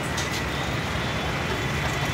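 Steady road traffic noise, an even rumble and hiss with a faint thin high tone running through it.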